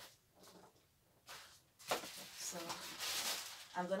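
Rustling and handling noises, light clicks at first, then a louder hissy rustle from about two seconds in, as ring-light parts and plastic packaging are rummaged through. A brief murmur of voice comes near the end.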